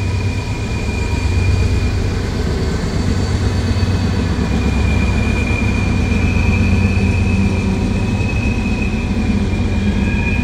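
A freight train led by two Norfolk Southern diesel locomotives, passing with a steady low engine rumble that swells in the first couple of seconds, followed by its loaded woodchip cars. A steady high-pitched squeal runs over the rumble.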